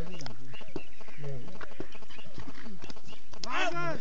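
Men's voices calling and shouting across an open playing field, with a loud, high shout near the end.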